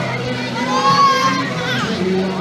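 Young riders on a swing carousel shrieking and shouting, one high voice rising and falling about a second in, over steady fairground music and crowd chatter.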